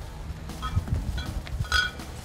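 Low, steady outdoor rumble with three short, high-pitched clinks about half a second apart, the last the loudest.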